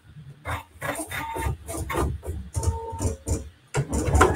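PFAFF Creative Icon 2 embroidery machine starting its stitch-out: a run of short, uneven mechanical knocks with brief whirring motor tones. It settles into a steady, louder running sound near the end.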